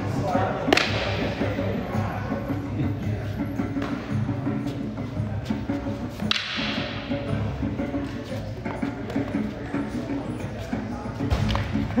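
Wooden sparring sticks striking in stick fighting: sharp cracks, the two loudest about a second in and a little after six seconds in, with lighter taps between. Background music and voices run underneath.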